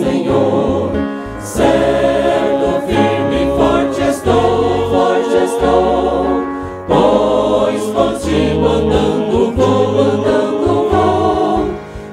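A church vocal ensemble singing a gospel hymn in harmony into microphones. There are brief breaks between phrases about a second in and again near seven seconds.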